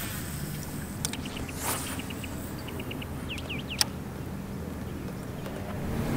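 Quiet open-water ambience from a boat: a low steady hum, faint bird chirps in the middle, and a few light clicks, one sharper near the four-second mark.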